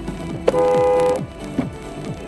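Car horn sounding one steady blast of under a second, about half a second in, louder than the electronic dance music playing in the car.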